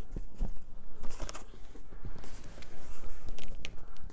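Handling noise from a foam-lined cardboard box as a microphone on a small tripod stand is set inside it and the box is shifted: irregular knocks, clicks and rustles.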